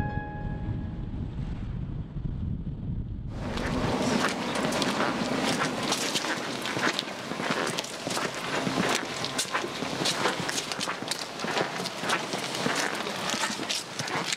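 A low rumble under the last fading piano notes. About three seconds in, outdoor ambience cuts in suddenly: a steady hiss with a run of short scuffing clicks, like footsteps of a person walking on a paved village street.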